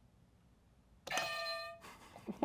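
Near silence, then about a second in a game-show buzzer sounds once: a single electronic chime-like tone lasting under a second, the signal of a contestant buzzing in to answer.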